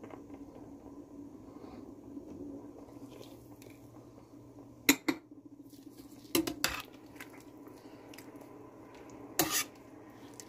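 Metal ladle clinking against a metal cooking pot while stirring tahini into a simmering sauce: a few sharp clinks, in pairs about halfway through, again a second and a half later and near the end, over a faint steady low hum.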